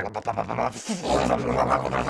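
Dodge Neon SRT-4's turbocharged four-cylinder engine running, a steady low drone of unchanging pitch that takes over about halfway through after a short choppy stretch.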